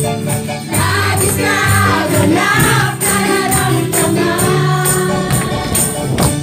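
Live upbeat worship song: a woman singing into a microphone with a group singing along, backed by electric guitars, keyboard and a steady beat.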